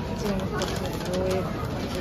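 Wrapping paper crinkling as it is folded and creased by hand around a gift box, under indistinct voices and short held tones from the busy shop floor.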